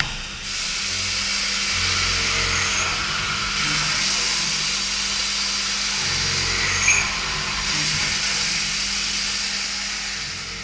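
Coolant spraying onto diesel cylinder heads inside a CNC machining centre's enclosure: a steady hiss over a low machine hum, with one sharp click about seven seconds in.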